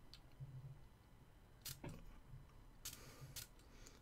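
Near silence with a few faint, short clicks from handling a fragrance bottle: one at the start, a pair a little under two seconds in, and another pair about three seconds in.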